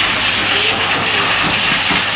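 Dog grooming dryer blasting air through its hose and nozzle onto a wet dog's coat. It gives a loud steady rush of air over a low motor hum.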